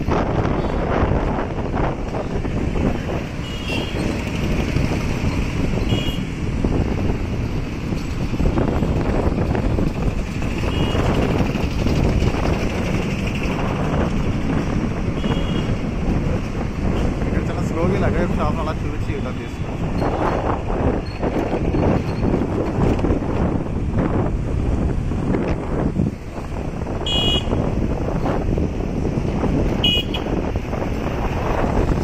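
Street ambience: steady traffic noise with wind rumbling on the microphone and voices in the background, with a few short high beeps scattered through it.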